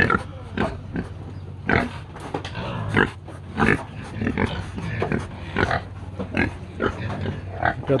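Pigs grunting while they feed, a dense run of short, irregular grunts.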